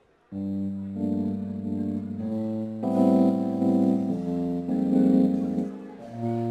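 A live band's electric keyboard plays sustained chords with a wavering tremolo over a held bass note, starting abruptly about a third of a second in. The chords change every second or so, opening the next song.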